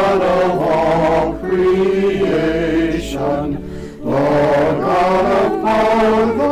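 A small choir of men's and women's voices singing a hymn a cappella in held chords. There is a short break between phrases about a second and a half in, and a quieter gap around three to four seconds in.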